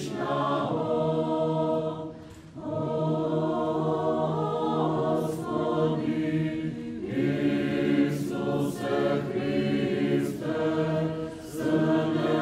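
Choir singing Orthodox liturgical chant a cappella, holding long chords over a steady low note, with short breaks for breath about two seconds in and again near the end.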